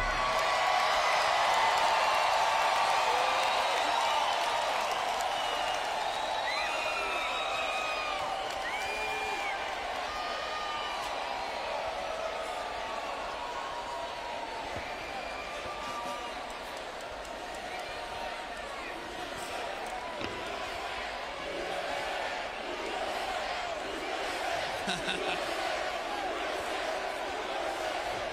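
Concert crowd cheering, whooping and screaming after a song ends, easing off slowly and then swelling again in the last several seconds.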